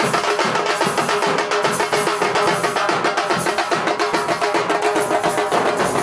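A drum band plays a fast, driving rhythm on large bass drums, with a steady held note running under the beat.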